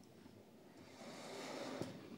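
Near silence, then from about a second in a faint, soft rolling sound: a 1:64 Mini GT Honda S2000 diecast car on rubber tyres, pushed by hand across a play mat. A small click comes near the end. The car rolls only a little.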